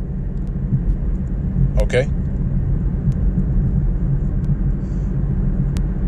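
Steady low rumble, with a single spoken word about two seconds in.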